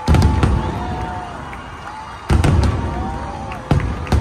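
Aerial fireworks bursting overhead: three loud booms, one at the start, one a little past halfway and one near the end, each trailing off, with sharp crackles between them.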